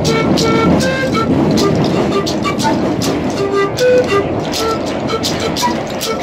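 Bamboo pan flute playing a melody of short notes over a hand rattle shaken in a steady beat, with the metro train's rumble underneath.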